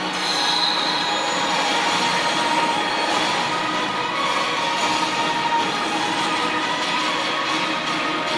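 The line-up video's soundtrack played over the stadium's PA and echoing around the stands: a steady, dense sound of music and sound effects with several held tones and no clear beat.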